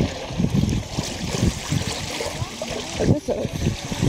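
Indistinct talking, with voices rising and falling in short bursts, over a steady hiss.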